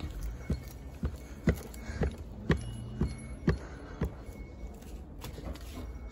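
Footsteps, light knocks evenly spaced about two a second, over a low background rumble.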